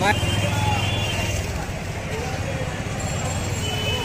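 Busy city street: many people chattering over a steady low rumble of traffic engines.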